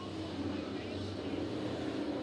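A pack of dirt late model race cars' V8 engines running together as the field bunches up in a turn, a steady dense engine drone.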